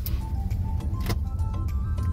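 Steady low rumble of road and engine noise inside the cabin of a moving Volkswagen Teramont, with music faintly over it.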